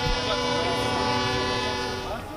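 A horn held in one long steady blast of several tones that cuts off near the end, with voices shouting faintly under it.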